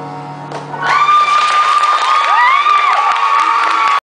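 Final piano chord dying away, then an audience breaking into applause and cheering about a second in, with high calls that rise and fall above the clapping.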